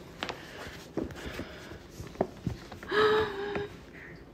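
A fabric handbag being handled and lifted: soft rustling with a few light clicks, likely from its handle fittings. About three seconds in comes a short held vocal 'ooh'.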